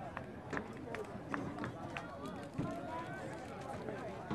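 Faint, distant voices and chatter outdoors, with a few scattered short clicks and taps.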